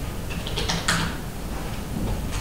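Typing on a computer keyboard: a short run of a few key clicks in the first second, over a steady low hum.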